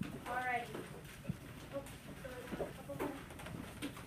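A quiet classroom with a brief high-pitched child's voice near the start, then faint scattered voices and small knocks from students at their desks.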